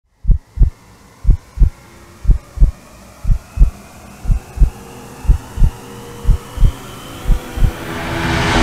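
Heartbeat sound effect: pairs of deep low thumps, one pair a second, eight in all, over a faint drone that slowly rises in pitch and swells toward the end.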